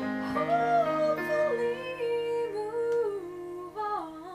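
A woman singing a slow ballad while accompanying herself on a digital piano. The held piano chord fades about halfway through while the sung melody carries on.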